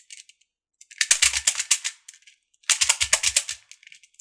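Beads of a Hasbro Atomix moving-bead puzzle clicking and rattling along their rings as the ball is turned by hand. There are two short bursts of rapid clicks, each about a second long.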